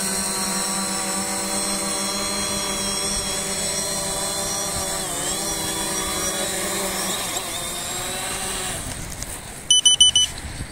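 FIMI X8 SE V2 quadcopter's propellers whirring steadily as it comes in to land, the pitch dipping briefly about halfway through as it touches down. The motors then spin down and stop, and a few short electronic beeps sound right at the end.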